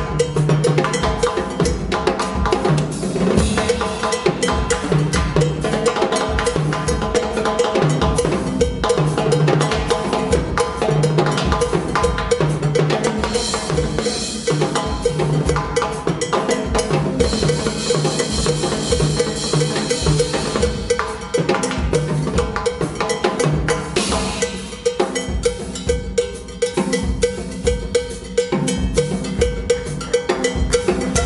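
Drum kit and congas playing a rhythmic groove together, with a cymbal ringing out through the middle stretch.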